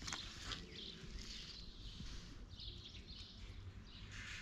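Quiet outdoor ambience with faint, scattered bird chirps and a brief light click near the start.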